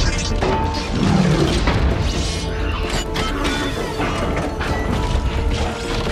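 Film sound effects of a giant robot transforming: dense mechanical clanking and ratcheting with crashes over a deep rumble, with dramatic film score underneath.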